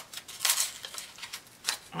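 Kraft paper wrapping being handled as its sticker seal is peeled and ripped: a short rustling tear about half a second in, then a few light clicks.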